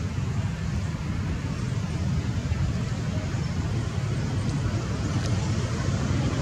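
Steady low rumbling outdoor background noise with a fainter hiss above it, even throughout.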